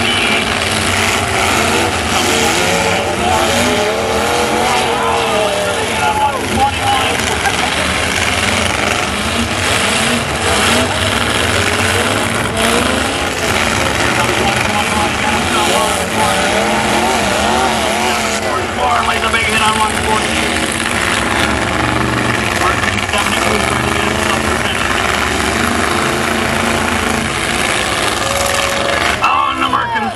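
Several full-size demolition derby pickup trucks' engines running and revving together, their pitches rising and falling as they move around the arena.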